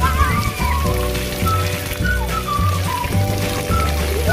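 Water from a splash-pad spray fountain pattering steadily onto the pad, mixed with background music that has a changing bass line.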